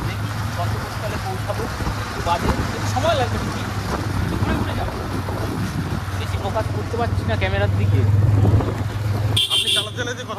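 Small motorcycle engine running steadily at low road speed, with wind and road noise. A short, high-pitched sound comes near the end.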